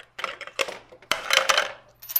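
Clicks and metallic clattering as the wheel guard is worked off a cordless angle grinder and set down on a steel welding table, loudest about a second in.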